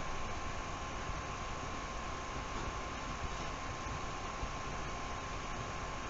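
Steady hiss with a thin, constant high-pitched tone running through it: the recording's background noise, with no distinct sound standing out above it.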